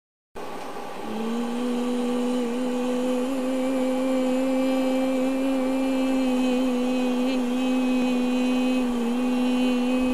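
A person humming one steady, sustained note, with slight wavers in pitch, starting about a second in.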